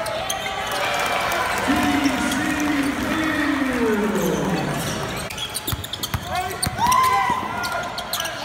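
Live basketball game sound in an arena: a ball bouncing on the hardwood court amid players' shouts, with one long call that falls in pitch about two seconds in.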